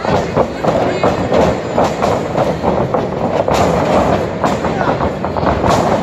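Wrestling ring thuds and rattling as wrestlers move and land on the mat, with several sharp knocks in the second half, under continuous shouting from the crowd.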